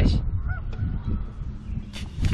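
Geese honking, two short calls about half a second apart, over a steady low wind rumble on the microphone.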